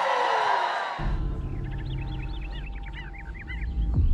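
Trailer soundtrack: a dense sweeping swell with a falling glide, cut off about a second in by a low droning bass. Over the drone comes a quick run of short, high chirping calls, and a sharp hit lands at the end.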